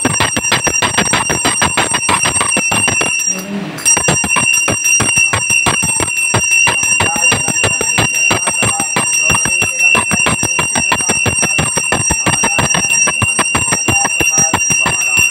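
Small puja hand bell rung rapidly and continuously during an aarti, its clanging strikes running together into a steady high ringing, with a brief pause about three seconds in.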